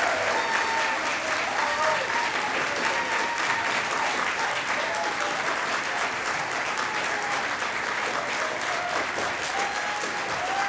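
A large audience clapping steadily, with shouts and whoops of cheering scattered above the applause.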